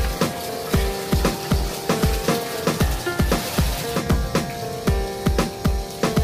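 Background electronic music with a steady kick-drum beat and sustained synth tones.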